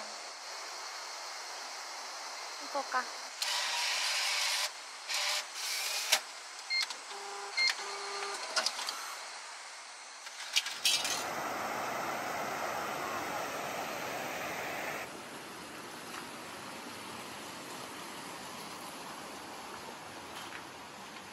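Bath-ticket vending machine taking a banknote: a whirring feed for about a second, then clicks and short electronic beeps as it issues the ticket. From about halfway, the steady rushing of a river pouring over a weir takes over.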